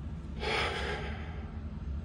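A man's audible breath, a single noisy rush of air starting about half a second in and fading after about a second, over a steady low hum.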